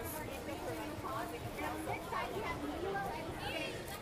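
Chatter of a passing crowd: several people's voices talking at a distance, none of them close.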